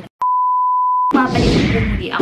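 A single steady electronic bleep, a pure tone at about 1 kHz lasting just under a second, cut in abruptly after a moment of dead silence and ending just as suddenly: an edited-in bleep tone.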